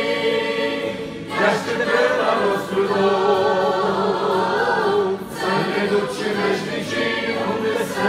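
A small group of female voices singing a Romanian-language Christian song together in harmony through microphones. Brief breaks between phrases come about a second in and again about five seconds in.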